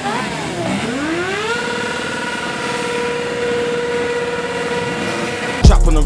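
Yamaha sport motorcycle engine revving: the revs climb over about a second, then hold steady at high revs for about four seconds. The hip-hop beat cuts back in near the end.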